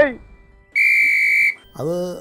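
A single loud, steady high-pitched whistle tone, held without any change in pitch for under a second between two stretches of speech.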